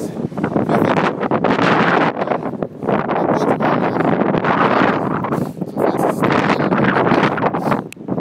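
Wind rushing over the microphone, loud and steady with a few brief lulls.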